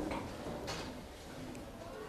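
Quiet classroom background noise: a faint hush of children shuffling, with a soft tap about two-thirds of a second in and faint murmured voices.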